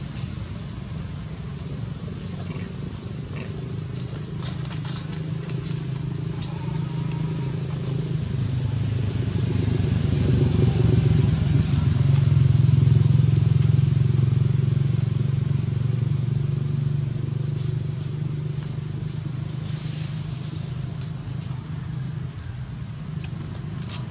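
A low engine hum that grows louder to a peak about halfway through and then fades, like a vehicle passing by, with faint crackles of dry leaves.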